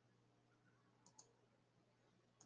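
Near silence: faint room tone with a low steady hum, and two faint clicks close together about a second in.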